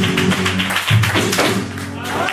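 Flamenco guitar with rapid rhythmic palmas (hand clapping) in the closing bars of an alegrías. There is a strong accented stroke about a second in, and the playing then trails off.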